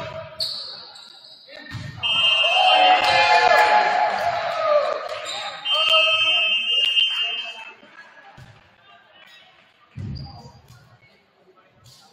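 Volleyball rally in a gym: a short shrill whistle just after the start, then the thumps of the ball being hit, and loud shouting and cheering from players and spectators for several seconds as the set-winning point is scored. Later the ball thuds on the hardwood floor a few times as the noise dies down.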